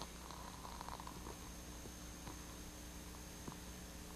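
Quiet room tone: a steady low hum and hiss, with a few faint soft clicks.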